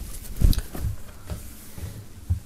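A cotton T-shirt being handled, unfolded and laid out on a table: fabric rustling with several soft thumps, the loudest about half a second in.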